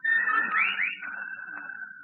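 Radio-drama sound effect of whippoorwills calling: two quick swooping whistles about half a second in, over a steady high, eerie whistling tone.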